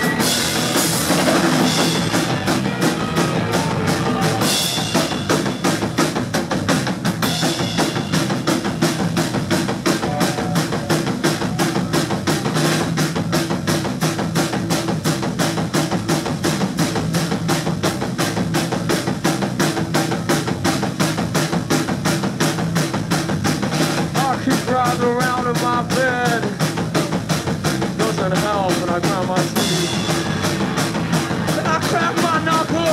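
A rock band playing an instrumental passage live: a drum kit keeps a fast, steady beat on bass drum and snare under electric guitars and bass. Wavering high guitar lines come in near the end.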